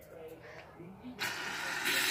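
Aerosol can of shaving cream spraying: a steady hiss of about a second, starting past halfway and getting louder near the end.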